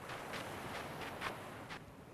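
Soft footsteps at a walking pace, about two a second, over a steady background hiss.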